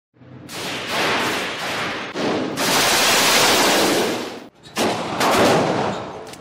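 A rapid string of gunshots echoing in an indoor shooting range. The shots come so close together that they run into one another, with a brief break about four and a half seconds in.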